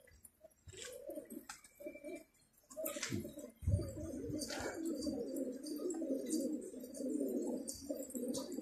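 A flock of domestic pigeons cooing together, a low overlapping murmur that is sparse at first and grows fuller and steady from about three seconds in. A few sharp clicks and a low thump come a little past the three-second mark.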